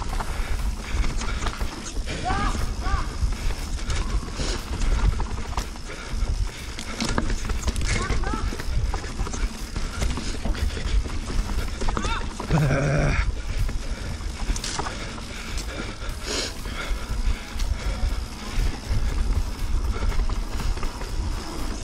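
Yeti SB150 29er mountain bike rolling fast down a dirt trail, heard from a camera mounted on the bike: a steady low rumble of wind and tyres, with the bike rattling and knocking over bumps. A few brief higher-pitched sounds come through, the clearest about 12 to 13 seconds in.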